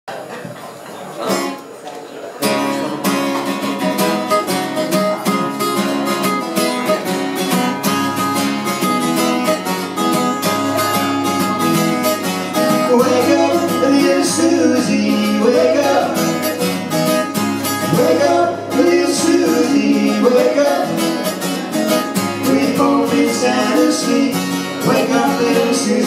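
Acoustic guitar strummed in a steady rhythm, starting about two seconds in. A harmonica plays over it with bending notes in the second half.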